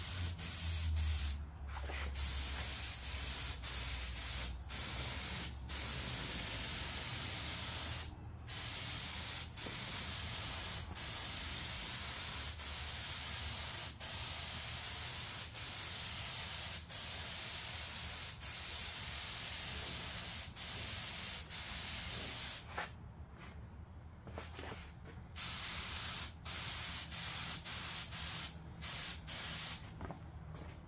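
Compressed-air paint spray gun run at low working pressure, giving a steady hiss of air and paint. The hiss is broken by many brief stops as the trigger is let off between passes. A longer lull comes a little after twenty seconds in, then spraying resumes.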